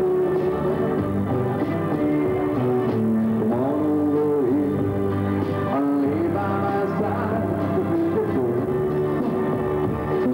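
Live pop band music with a prominent guitar line over bass, its melody sliding up and down in pitch.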